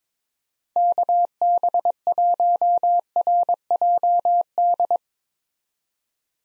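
Morse code sent as a single steady beeping tone at 22 words per minute, spelling the callsign KB1RJD, starting about a second in and stopping about a second before the end.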